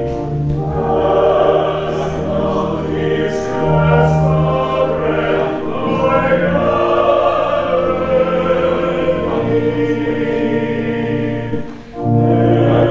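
Choir singing a slow sacred piece in long held chords, with a brief break between phrases just before the end.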